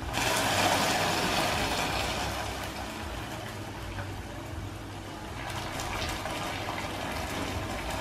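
Fresh coconut water poured slowly into hot caramelised sugar in a wok, the caramel hissing and boiling up violently. The noise is loudest at first, eases off, and swells again a little later as more liquid goes in.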